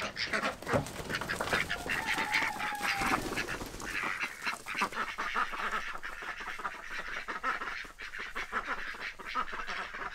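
A flock of domestic ducks quacking and chattering, many short calls overlapping without a break.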